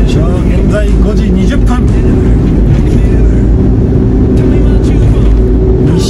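Loud, steady engine and road rumble inside a moving van's cabin.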